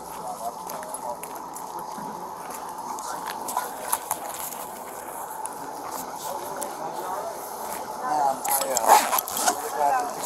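Indistinct voices of people talking in the background over a steady hum. The voices grow louder and clearer near the end.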